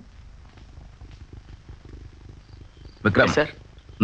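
A low, rough rumble, then a short, loud voice sound about three seconds in.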